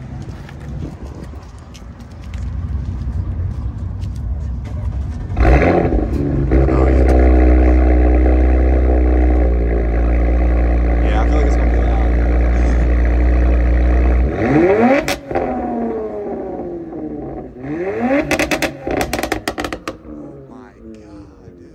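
Audi RS5's twin-turbo V6, fitted with headers and high-flow exhaust parts, starts about five seconds in with a sudden loud flare, then settles into a steady, loud idle. Near the end it is blipped twice, each rev quickly rising and falling, and the second is followed by a rapid string of sharp pops.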